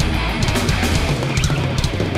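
Thrash metal band playing live: heavily distorted electric guitars over a drum kit with rapid drum and cymbal hits.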